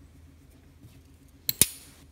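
Steel screwdriver shaft snapping onto a servo motor's permanent-magnet rotor: two sharp metallic clicks about a tenth of a second apart, the second louder with a brief ring, pulled in by the rotor's very strong magnets.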